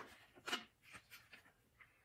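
A picture book's paper page being turned: a short faint rustle about half a second in, then near silence with a few soft ticks.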